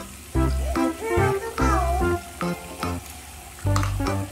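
Background music with a bouncing bass line of short repeated notes, over a faint steady hiss.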